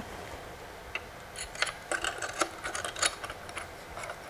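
Glass diffusion dome being fitted back onto an Einstein studio strobe's faceplate, where four pliable metal tabs hold it: a string of small clicks and light scrapes of glass against metal, starting about a second in.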